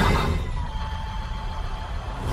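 Sound-effect sting for an animated logo: a rushing whoosh over a steady low rumble, with a faint high tone held underneath.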